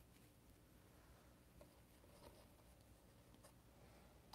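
Near silence: faint room hum, with a few soft ticks of a small paintbrush working acrylic paint on a palette.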